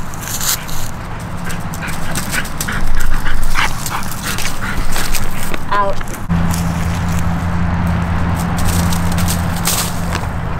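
A dog whining and yipping in a quick series of short high cries a little before the six-second mark, over scattered short sounds. A steady low hum comes in just after and holds to the end.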